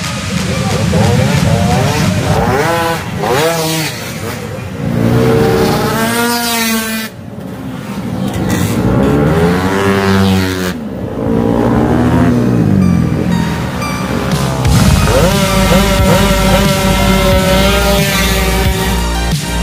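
Two-stroke racing scooters accelerating hard down a drag strip, each engine's pitch rising as it revs up and then falling away as it passes, several runs one after another. Electronic music with a steady beat comes in near the end.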